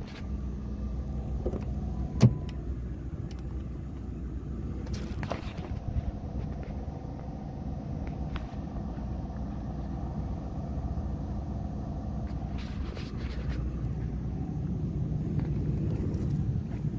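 Car door latch of a 2011 Ford Crown Victoria clicking sharply once as the driver's door is opened, about two seconds in. Lighter clicks and handling noises follow, over a steady low rumble.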